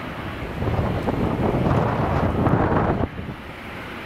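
Wind buffeting the camcorder's microphone: a gusty low rumble that builds about half a second in and cuts off suddenly about three seconds in.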